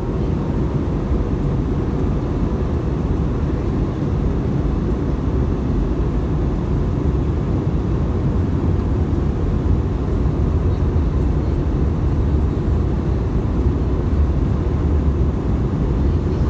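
Steady airliner cabin noise in flight: an even rush of engine and airflow sound, heaviest in the low end.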